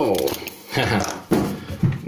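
A man's voice: a loud startled exclamation falling in pitch, then short bursts of laughter.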